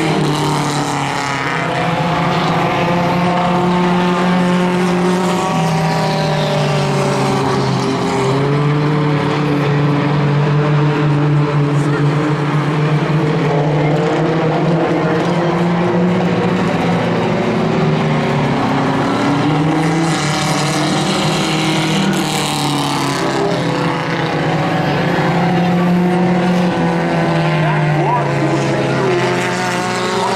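Hornet-class race car engines running hard around a dirt oval, their pitch rising and falling over and over as the cars accelerate out of the turns and lift going in.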